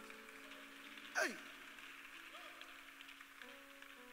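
Soft background music of held, sustained chords with a faint steady hiss, broken about a second in by a single short shouted "hey" that falls in pitch.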